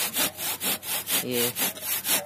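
Hand saw cutting through a wooden post in quick, even back-and-forth strokes, about four a second.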